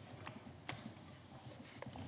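Faint, irregular clicks and taps of laptop keyboards being typed on, over a low steady room hum.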